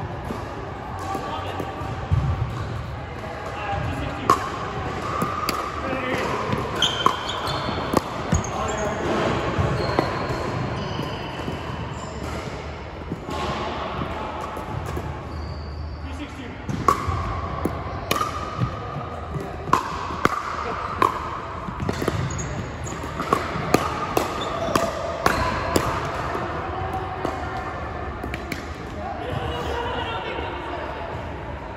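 Pickleball play on an indoor hardwood court: repeated sharp pops of solid paddles striking the plastic ball, with short sneaker squeaks on the wooden floor, echoing in a large hall.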